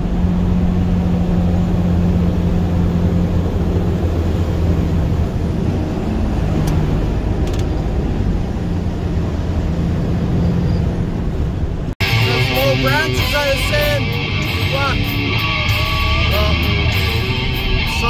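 Steady engine drone and road noise inside a tractor-trailer's cab while driving. About twelve seconds in, the sound cuts off abruptly and guitar music with singing begins.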